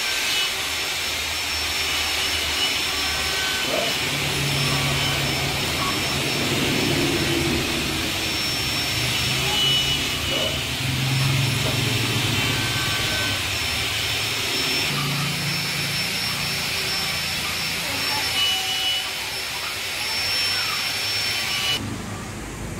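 A steady hiss, with faint voices in the background.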